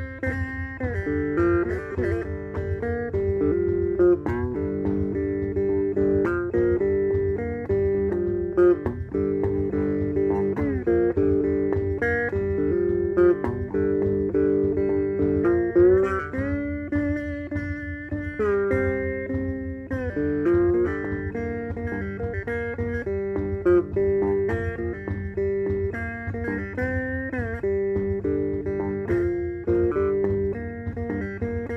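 Three-string cigar box guitar with a single-coil pickup, played clean through a cigar box bookshelf amp: a picked lead line of single notes, several of them sliding in pitch.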